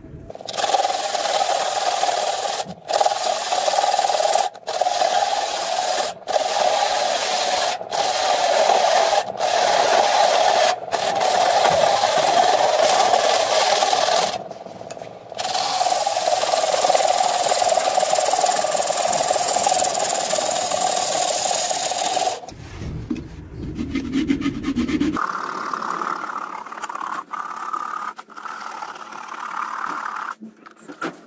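Wood vessel spinning on a lathe while it is sanded and cut with a turning tool: a steady rasp with brief breaks every second or two and one longer break about halfway. Near the end a handsaw cuts off the nub left at the tailstock, in quick, even strokes.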